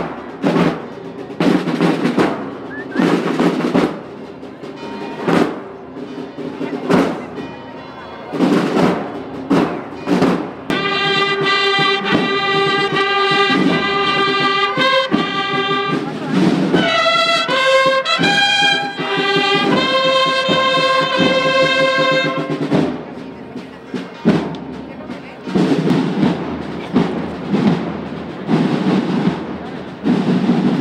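Marching band playing a processional march: drum strokes alone for about the first ten seconds, then the trumpets come in with a held melody for about twelve seconds, and the drums carry on alone again near the end.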